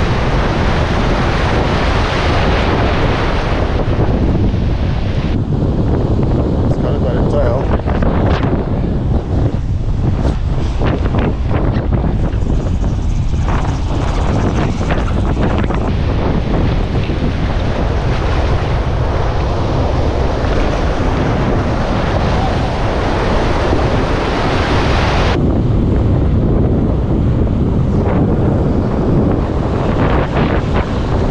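Wind buffeting the microphone over breaking surf and rushing whitewater, a loud steady rumble, with a cluster of splashes a few seconds into the clip.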